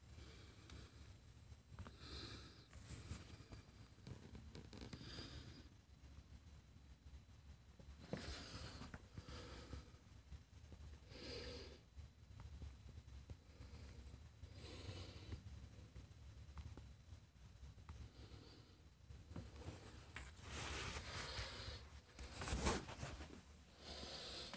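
Faint breathing close to a handheld phone's microphone: soft breaths every few seconds, with a sharp handling click near the end.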